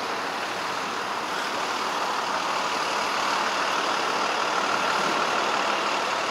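City street traffic: a steady rush of passing motor vehicles at an intersection, swelling slightly toward the middle and later part, with a faint steady whine near the end.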